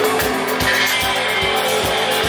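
Live instrumental space-rock jam by a band: electric guitars and bass guitar over a drum kit keeping a steady beat.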